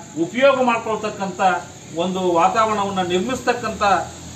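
A man speaking Kannada, giving an address in continuous phrases with short pauses. A steady high-pitched hiss runs beneath his voice.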